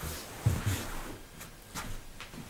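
A person getting up off a sofa and moving away: rustling of clothes and upholstery with two low thumps about half a second in, then a couple of light clicks.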